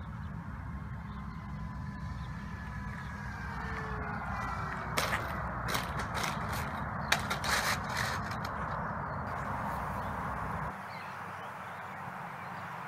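A small RC model plane's motor whine sliding down in pitch as it passes, then a run of sharp clatters and knocks about five to eight seconds in as it hits and tumbles across asphalt. A low wind rumble runs underneath, and the background changes near the end.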